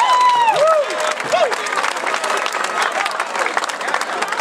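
Audience applauding and cheering at the end of a brass band piece, with a few whooping voices in the first second and a half.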